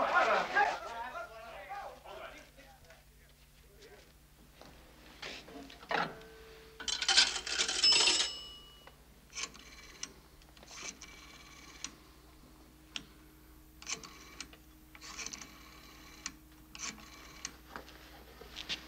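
Coins dropped into an old wall pay telephone, clattering and setting off its ringing coin chimes, then the rotary dial turned and clicking back several times as a number is dialed.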